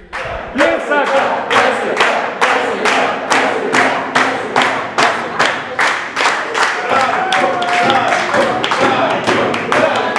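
A class of students clapping together in a steady rhythm, a little over two claps a second, with voices cheering underneath.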